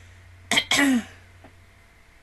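A woman clears her throat: two short, loud, rough bursts about half a second in, the second sliding down in pitch.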